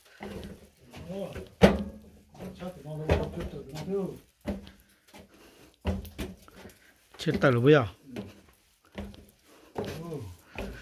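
Voices talking in short phrases, broken by a few sharp knocks; the loudest knock comes about one and a half seconds in.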